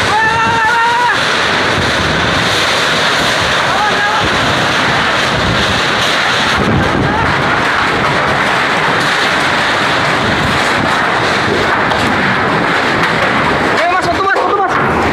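Whirlwind storm: strong wind and driving heavy rain making a loud, steady rushing noise, with gusts buffeting the microphone.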